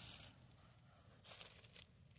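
Near silence: faint hiss with a soft, faint rustle past the middle.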